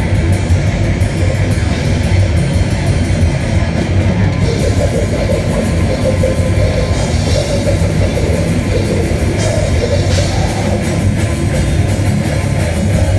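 Live metal band playing a song: distorted electric guitars and a drum kit at a steady, loud level.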